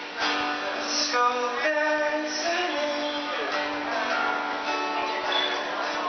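Acoustic guitar strummed live, with a singer's voice carrying the melody over it.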